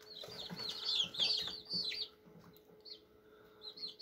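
Birds cheeping: rapid runs of short, high-pitched falling calls over the first two seconds, quieter for a while, then again near the end, over a faint steady hum.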